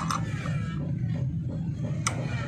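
A wrench clicking against the centre nut of a small engine's starter pulley, two quick metallic clicks at the start, over a steady low hum.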